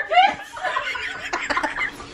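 Women laughing: a short voiced laugh at the start, then quieter, breathy snickering.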